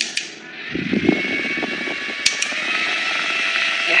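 A small TrubliFit clip-on USB fan for a Peloton bike running, with a steady whir and a faint whine that rises slightly in pitch around the middle as it speeds up. A brief low rumble comes about a second in, and two sharp clicks sound just after two seconds.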